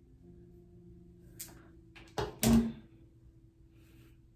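A woman says one short word about two seconds in, right after a brief click, over a faint steady hum.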